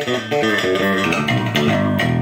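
Yamaha TRB6 JP six-string electric bass played through an amp: a quick run of plucked single notes. Both pickups are on and the bass's treble is turned up to its centre detent, opening up the tone.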